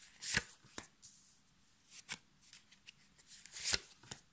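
Tarot cards being dealt out and laid down on a cloth: a few short, sharp card slaps and snaps, the loudest about a third of a second in and another near the end, with quieter ones between.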